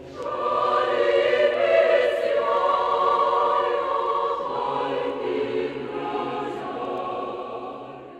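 Choir singing held, sustained chords, swelling just after the start and beginning to fade near the end.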